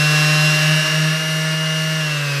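Makita DBO180 cordless random orbital sander running at its highest speed setting: a loud, steady whine over a low motor hum, which a sound meter puts at about 100 dB.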